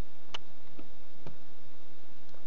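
A few faint, short clicks over a steady background hiss, the clearest about a third of a second in.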